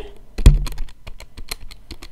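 A quick, irregular run of key-press clicks, about a dozen in a second and a half, with a louder knock about half a second in: keys tapped to enter a calculation.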